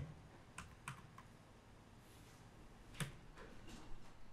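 Faint keystrokes on a computer keyboard: a few scattered key presses about half a second to a second in, then a small cluster around three seconds in, the loudest of them.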